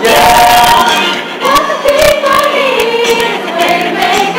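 Pop choir of boys' and girls' voices singing together in harmony.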